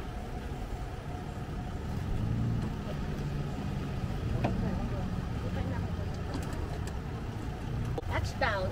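Van-mounted BraunAbility wheelchair lift lowering its platform to the ground, with a steady low mechanical hum.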